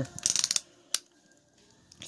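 Ratchet joint in the arm of a plastic Transformers Masterpiece MP-29 Shockwave figure clicking as the arm is moved: a quick run of clicks, then a single click about half a second later.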